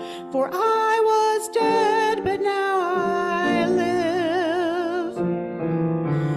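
A woman singing a song into a microphone, accompanied by grand piano, with long held notes, some sung with a wide vibrato.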